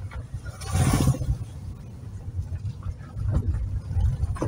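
Car driving slowly over a rough dirt forest track, heard from inside the cabin: steady low engine and road rumble, with a brief louder rush of noise about a second in.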